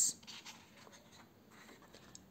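Faint rustle of paper as a page of a hardcover picture book is turned.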